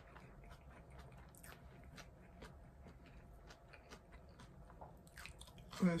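Faint chewing of a mouthful of shrimp taco, with small scattered mouth clicks.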